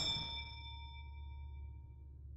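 A small bell struck once, most likely a shop-door bell as a customer enters, ringing with several clear tones that fade away over about two seconds, over a low steady hum.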